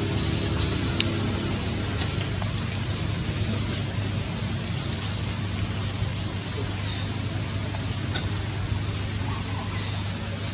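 Outdoor ambience: a short, high chirp repeating evenly nearly twice a second over a steady low hum.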